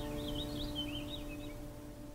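The last acoustic guitar chord of the song ringing out and fading away. A short, high, warbling bird call sounds over it for about a second.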